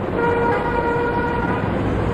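A vehicle horn sounding once, a steady tone held for about a second and a half, over the rumble of road traffic.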